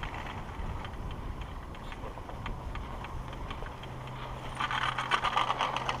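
Skis running on the packed snow track of a 1967 Städeli (WSO) platter surface lift, with scattered light clicks. About four and a half seconds in, a loud rapid clatter lasts just over a second as the haul rope and platter hanger run over a support tower's roller train, over a low steady hum.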